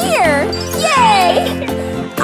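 Cheerful children's cartoon background music with a tinkling chime, under wordless cartoon voice sounds that glide up and down in pitch, with one long falling glide about halfway through.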